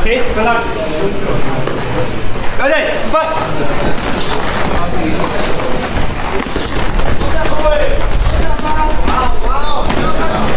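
Voices calling out and shouting throughout, with no clear words, around a live fight, with two sharp knocks close together about three seconds in.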